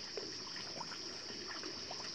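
Faint trickling and splashing of pool water as a swimming armadillo paddles, with a steady high-pitched hiss behind it.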